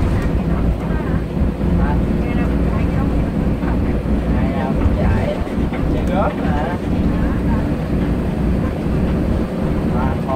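Steady engine and road rumble heard inside the cabin of a moving coach bus, with people's voices over it.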